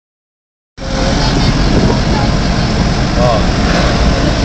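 Steady vehicle noise inside a moving passenger vehicle, with the engine and running gear loudest at the low end, starting suddenly a little under a second in. Faint passenger voices are heard over it.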